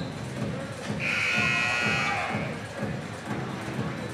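Gym scoreboard horn sounding once, a steady buzz of about a second and a half starting a second in, signalling the end of the timeout. Music and crowd chatter go on underneath.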